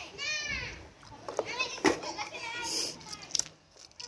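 A child's high-pitched voice talking in short phrases, with one sharp knock about two seconds in.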